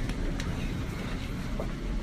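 Steady low rumble inside a commuter train carriage, with a faint click shortly in.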